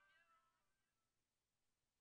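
Near silence: the faint tail of a high pitched sound fades out in the first half second, then nothing.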